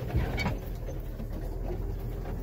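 Vehicle engine running low and steady while driving slowly along a rough dirt trail, heard from inside the cab, with a few light knocks in the first half second.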